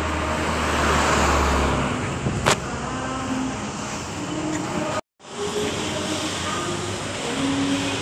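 Street ambience with traffic noise: a low engine hum for the first two seconds, a single sharp click about two and a half seconds in, and faint voices in the background. The sound cuts out to silence for a moment about five seconds in.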